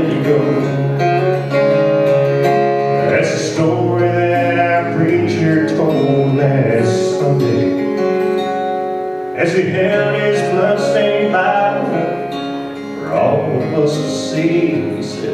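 A man singing a song while accompanying himself on a strummed acoustic guitar, with long held vocal notes.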